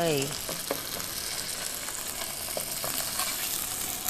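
A salmon fillet sizzling in hot vegetable oil in a frying pan, just laid in: a steady hiss with a few small pops.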